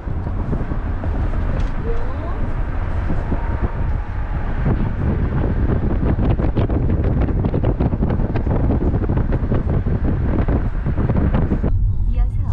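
Wind buffeting the microphone through an open car window while driving, over the low rumble of the car on the road.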